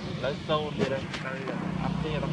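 Short, pitched voice calls that bend up and down, over a steady low engine hum that grows from about one and a half seconds in.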